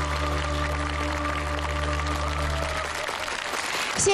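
Audience applauding while the closing chord of a Yue opera accompaniment is held, with a deep bass note, and then stops about three seconds in.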